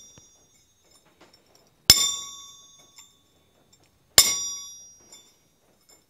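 Hand hammer striking a steel center punch on square steel bars lying on an anvil: two sharp metallic strikes about two seconds apart, each ringing out and dying away over about a second. Each strike marks a bar for a forged half-lap joint.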